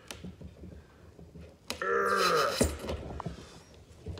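Pliers working a veered brad nail back out of a wooden board: light clicks and scraping of the pliers on the nail, then a squeak about halfway through, lasting about a second, with a pitch that rises and falls.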